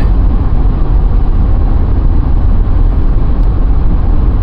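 Steady low rumble of road and engine noise inside a moving car's cabin, driving on the highway.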